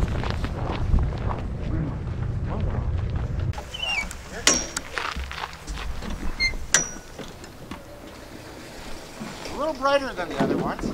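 Low rumble of wind and footsteps on the microphone, then a few sharp metallic clicks, two with a brief high ring, as the latches of an enclosed cargo trailer's rear ramp door are undone.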